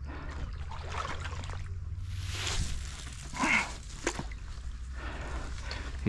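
Water splashing as a hooked pike is played on the line, with a rush of splashing about two seconds in, a short louder sound a little after, and a steady low rumble underneath.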